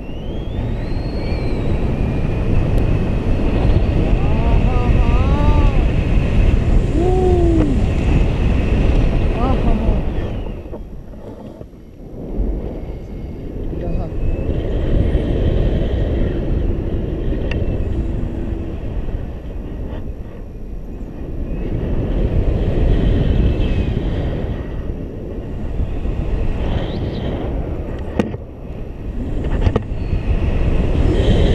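Wind rushing over the camera microphone in paraglider flight, a heavy low rush that swells and eases in waves and drops away briefly about eleven seconds in.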